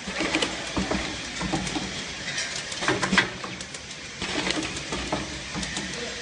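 Plastic cup counting and packing machine running: a steady low hum with clusters of sharp clicks and clattering every second or two as stacks of clear plastic cups are moved along the channels.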